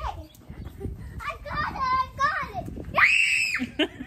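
A young girl's high-pitched voice, chattering in quick wavering sounds, then a short, loud squeal about three seconds in.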